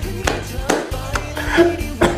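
A Thai pop song plays: a man sings in Thai over a steady beat and a bass line.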